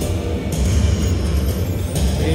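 Slot machine win music from a Money Link: The Great Immortals machine as a bonus win is tallied, over a steady deep rumble.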